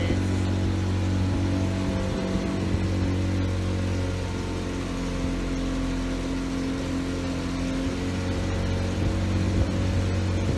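Motor boat's engine running steadily at cruising speed on the Nile, a low, even drone with a haze of wind and water noise over it.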